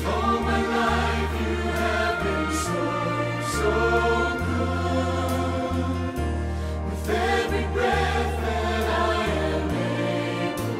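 A mixed choir singing a slow worship song in parts, with piano accompaniment; held bass notes change every second or two beneath the voices.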